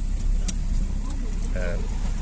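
A car engine idling, a steady low rumble heard from inside the cabin, with a single sharp click about half a second in and faint voices near the end.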